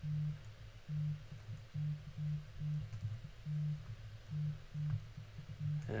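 Low electrical hum that switches on and off in short pulses, one to two a second at uneven spacing, with a few faint clicks.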